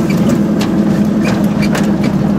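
Goggomobil's small air-cooled two-stroke twin-cylinder engine running steadily while driving, heard from inside the cabin, with a few sharp clicks and knocks from the car on a dirt track.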